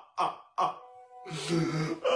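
A man laughing hard in short, throaty bursts, about three a second. They break off under a second in, and a steady tone with a rough, throaty sound follows.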